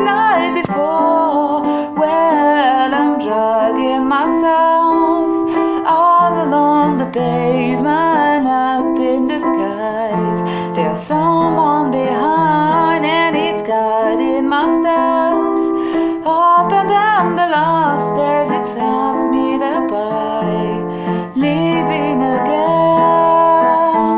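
A voice singing a slow song with vibrato, accompanied by sustained keyboard chords; the song ends at the close.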